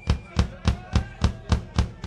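Live drum kit played on stage: a steady run of about eight evenly spaced hits, roughly three and a half a second, each with a deep bass punch.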